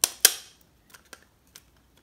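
Metal M5 bolt clicking against a 3D-printed plastic part as it is pushed through a bearing: two sharp clicks at the start, a quarter second apart, then a few light ticks.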